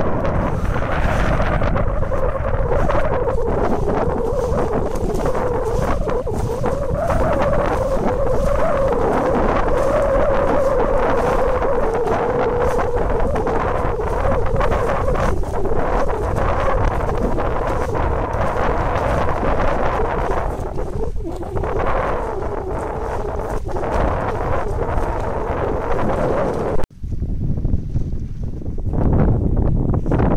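Wind buffeting the microphone, a loud steady rumble, with a wavering drone running underneath for much of the time. The sound cuts out for an instant near the end.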